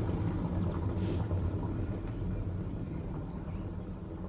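Steady low rushing of a stone fountain's running water, with no single event standing out.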